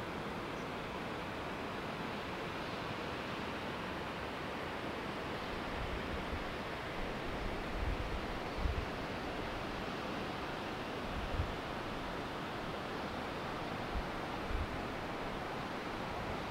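Wind outdoors: a steady rushing hiss, with a few low buffets on the microphone about six to nine seconds in, again briefly after eleven seconds and near the end.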